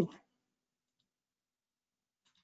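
Near silence with a single faint click about a second in, from a computer mouse as menu items are clicked.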